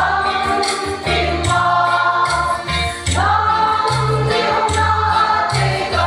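Large women's choir singing a hymn in unison, a new sung phrase starting about halfway through, over a repeated deep drumbeat.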